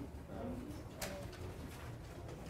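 Quiet classroom room hum with a faint low murmured voice near the start and a single sharp click about a second in.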